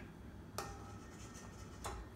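Quiet room tone with two light, sharp clicks, one about half a second in and one near the end. They come from hands on the stand mixer and the bowls before the motor is switched on.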